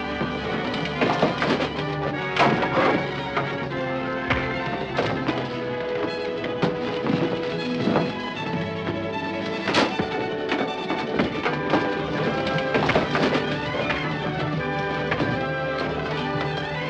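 Orchestral film score playing over a brawl, with repeated thuds and smacks of punches and bodies landing, the loudest about ten seconds in.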